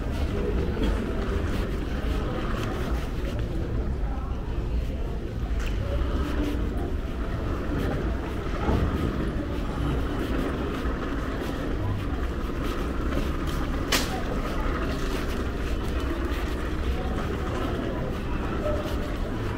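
Airport terminal ambience: a steady low rumble with a murmur of distant voices and scattered footsteps on the hard floor, and one sharp click about 14 seconds in.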